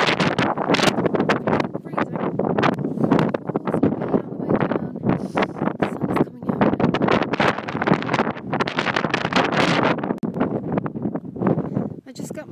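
Strong wind buffeting a phone's microphone in ragged, uneven gusts, loud enough to bury a woman's talking beneath it.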